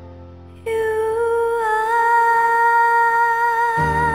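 A woman singing one long held note with a slight waver, starting about two-thirds of a second in, over a soft instrumental backing track of a pop ballad. Near the end the note ends and the backing shifts to new bass notes.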